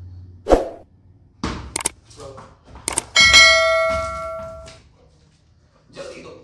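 Subscribe-button overlay sound effect: a few sharp clicks, then a bright bell chime about three seconds in that rings out for a second and a half.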